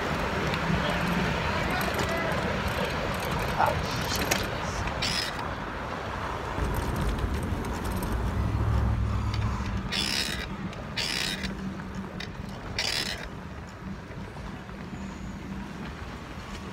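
Wind rushing over the phone's microphone and tyre noise as a BMX bike is ridden along the street, a steady low rumble that swells for a few seconds midway. Several short hisses sound in the second half.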